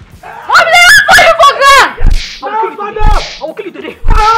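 A woman shouting angrily in a quarrel, her voice swinging up and down in pitch, with a few short low thuds between her words.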